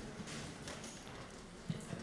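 Low room noise with a few faint taps and a short knock near the end.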